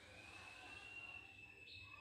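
Near silence with one faint, long, high whistling tone that rises slightly and then falls back, lasting about two seconds.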